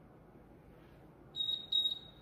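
Interval timer beeping: a quick run of short, high-pitched beeps starts about a second and a half in, marking the end of a 30-second exercise interval. Before it there is only faint room tone.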